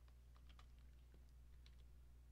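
Faint computer keyboard keystrokes: a quick run of clicks in the first second and a couple more near the end, over a low steady hum.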